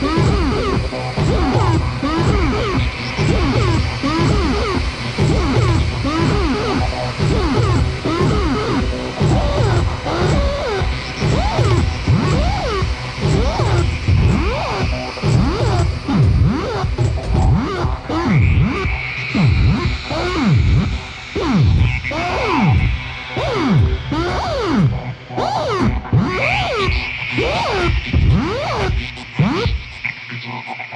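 Electronic music from a modular synthesizer: a dense run of arching pitch sweeps, two or three a second, over a low pulsing bed. The sweeps thin out over the last few seconds.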